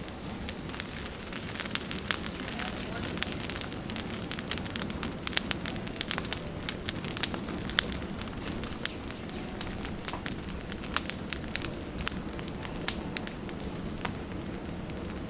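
Open brushwood fire of dry twigs burning fiercely: a steady rush of flame with frequent sharp crackles and pops throughout.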